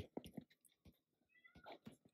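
Near silence, with a few faint light taps of a stylus writing on a tablet's glass screen and a brief faint high-pitched sound near the end.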